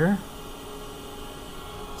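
The end of a spoken word, then a steady low hum and hiss of room tone with no distinct events.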